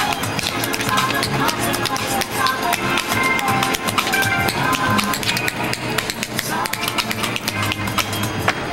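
Quick, irregular taps of tap-dance shoes on a board laid on pavement, over music with a melody and a steady low beat.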